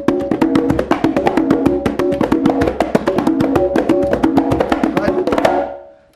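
A pair of conga drums played by hand, trading rapid strokes and ringing open tones in a call-and-response exchange, one drummer answering the other. The playing stops suddenly shortly before the end.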